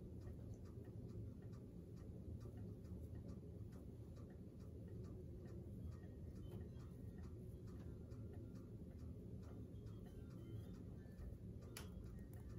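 Faint, regular ticking, about two ticks a second, over a low steady room hum.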